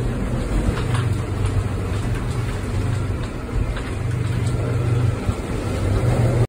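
Steady wind and rain noise around a sailboat in a cyclone, with a low rumble that swells and fades every second or two.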